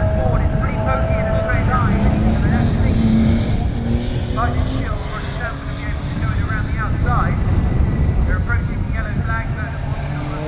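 Touring race cars running at speed through a bend on a wet track: a steady blend of engine noise and tyre spray. A voice talks over it in the background.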